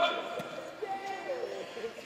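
Faint men's voices calling out during a flag football play, quieter than the talk just before.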